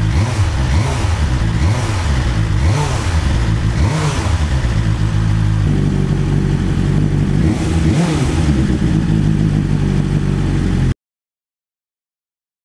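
A 2021 BMW S1000R's inline four-cylinder engine runs on a paddock stand and is revved several times, its pitch rising and falling between blips. The sound cuts off abruptly near the end.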